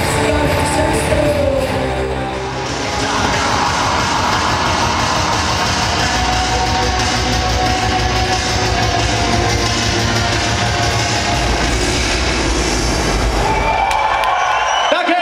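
Loud live band music with electric guitars, heard from the audience. About two to three seconds in, it cuts to another loud music track with a heavy, steady low beat.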